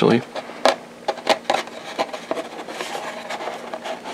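Cardboard box insert of a plastic model kit being handled and pulled at by hand: scattered light clicks, rubs and scrapes.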